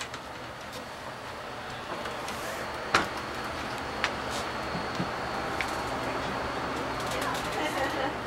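Footsteps and scattered knocks as people step through a hatch into a module of the space station mockup. A sharp knock comes about three seconds in and lighter ones follow, over steady room noise with a faint high whine.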